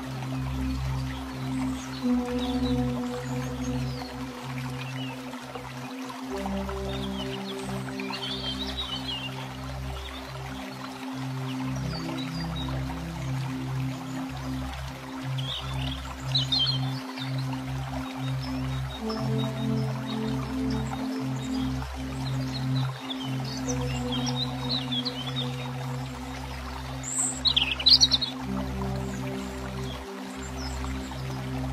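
Slow ambient background music of long held chords, with bird chirps scattered over it. A brief flurry of chirps near the end is the loudest moment.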